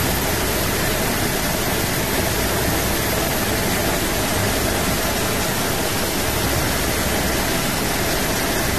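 Steady, loud rushing hiss, even from low to high pitch, with no tone or rhythm in it.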